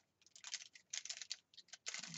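Sticker sheets and paper being handled: a run of light, irregular clicks and crackles.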